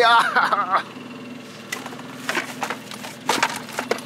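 Several sharp knocks and clatters as a freshly caught pike is handled into a plastic bucket in an inflatable boat, over the low steady hum of an idling outboard motor.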